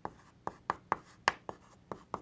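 Chalk writing on a blackboard: a quick, uneven run of sharp chalk taps, about three a second, with faint scratching between them.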